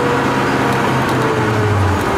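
Heavily tuned (550+ hp) Volvo 850 T5-R's turbocharged inline-five engine pulling the car at speed, heard from inside the cabin. The revs ease down about one and a half seconds in, and the engine note drops in pitch.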